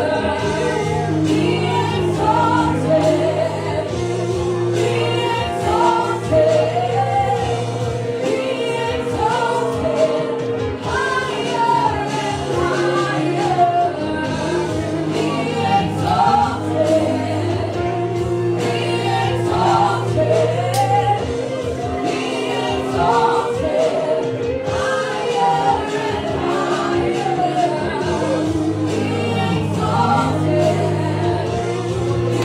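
Congregation and worship team singing a gospel worship song together, with instrumental accompaniment holding long steady chords underneath.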